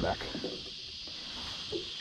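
Steady hiss of light rain falling on the water and the boat.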